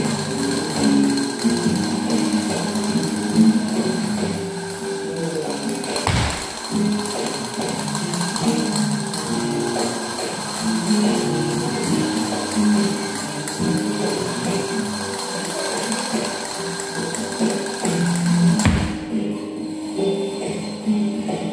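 Flamenco castanets played in fast rattling rolls (carretillas) over music with a low melody.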